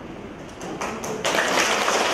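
A few scattered claps, then audience applause breaking out just over a second in and carrying on steadily.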